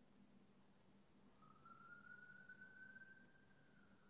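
Near silence: room tone with a faint low hum. From about a second and a half in, a faint thin whistle-like tone that rises slightly and holds.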